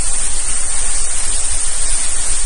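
Loud, steady rush of heavy rain and floodwater, an unbroken hiss with a low rumble beneath it.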